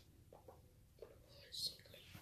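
Faint whispering in a quiet room, with a short hiss about one and a half seconds in.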